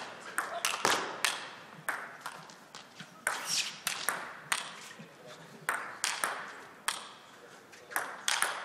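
Table tennis rally: a sequence of sharp clicks as the ball is struck back and forth by the bats and bounces on the table, in an irregular rhythm roughly half a second to a second apart.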